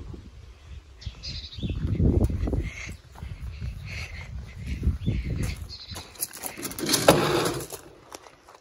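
A children's slide with a plastic chute and metal tube frame being lifted and carried, with uneven bumps and handling noise, and a louder clatter of the frame being set down about seven seconds in.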